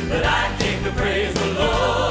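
Live praise and worship song: a choir singing over a band with drums and bass.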